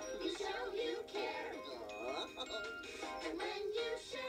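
Children's sing-along song: voices singing a melody over a light instrumental backing, sounding thin as if played through a TV speaker and re-recorded.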